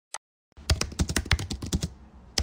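Computer keyboard being typed on, a quick run of about a dozen keystrokes entering an IP address. It starts about half a second in and comes after a single short click.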